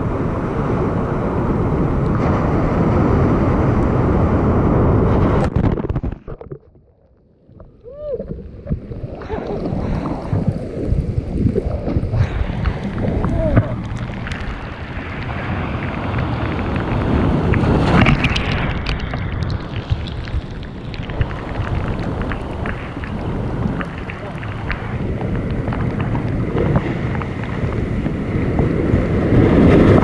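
Loud rushing of surf and wind buffeting the microphone. It cuts off sharply about six seconds in and builds back up over the next few seconds.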